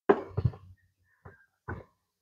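Short knocks and clicks of multimeter test leads and their clips being handled and connected together: a cluster in the first half-second, then two single knocks about a second and a half in.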